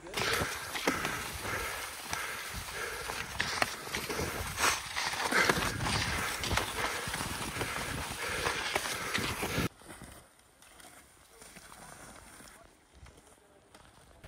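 Cross-country skis running fast along a snowy trail, with wind rushing over the camera microphone and scrapes and clicks from the skis and poles. About ten seconds in it cuts off suddenly, leaving only faint outdoor ambience.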